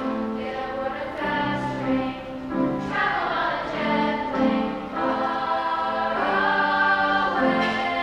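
A group of children's voices singing a song together as a choir, moving through held notes.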